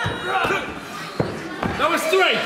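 A few hard slaps of a hand on a wrestling ring's canvas as the referee counts a pin, heard over raised voices.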